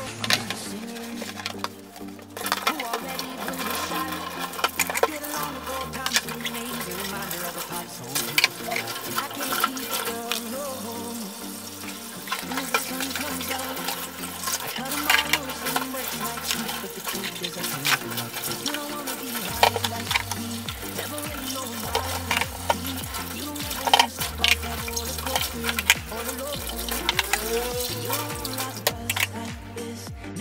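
A pop song with a steady bass beat plays over dishwashing at a kitchen sink: tap water running, with short clinks and knocks of cups and dishes being handled.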